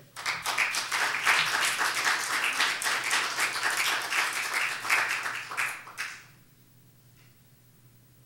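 Congregation applauding, a dense patter of many hands clapping that stops about six seconds in.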